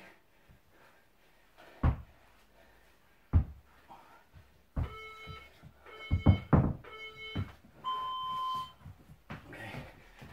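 An electronic interval timer gives three short beeps about a second apart, then one longer, higher beep, the countdown that ends a work interval. Before it, a few dull thuds of a dumbbell knocked against a wooden floor during Russian twists.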